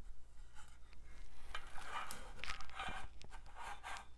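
Quiet handling sounds of a small metal tin being worked with a cotton swab: light rubbing and a few small clicks, busier in the second half.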